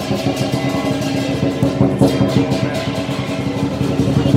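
Chinese lion dance percussion, drum with cymbals and gong, playing a fast continuous roll with the metal ringing underneath.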